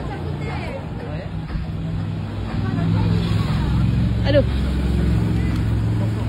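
Street traffic: a motor vehicle's engine running close by as a steady low hum, growing louder about two and a half seconds in.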